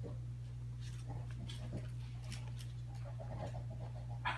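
Faint scattered taps and clicks of a baby's fingers on a plastic high-chair tray as he picks up food and eats, over a steady low hum, with a brief faint vocal sound near the end.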